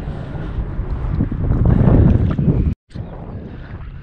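Wind buffeting the microphone over open bay water, a low rumbling noise that swells loudest about two seconds in. It breaks off abruptly near the end, followed by softer wind and water noise.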